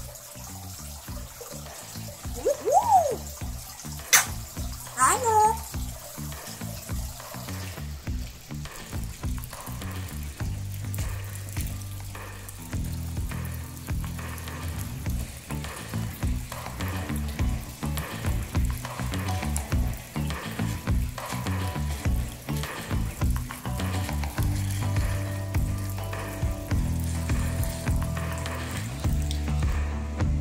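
African grey parrot whistling: a call that rises and falls about two or three seconds in, a sharp click, then a few falling calls about five seconds in, over a steady hiss. From about ten seconds on, background music with slowly changing bass notes.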